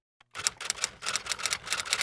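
Sound effect of rapid clicking and scratching, about eight strokes a second, laid under chalk-style lettering being drawn on a title card; it starts shortly after a moment of dead silence and cuts off suddenly.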